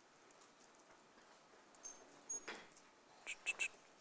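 Quiet lecture-hall room tone, broken by a few faint, brief sounds in the second half.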